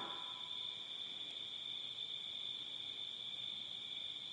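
Crickets chirping in a steady, unbroken high-pitched trill.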